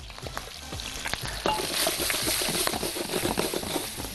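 Chicken drumsticks searing in hot oil in a frying pan: a steady sizzle that swells from about a second and a half in, with a few light clicks.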